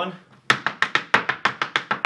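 Irish dance hard shoes striking a wooden dance board in a fast, even run of sharp taps, about ten a second, starting about half a second in.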